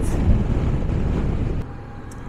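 Wind rushing over the microphone of a moving motorcycle, a low rumbling noise with the bike's engine and road noise under it. It drops to a quieter ride noise about one and a half seconds in.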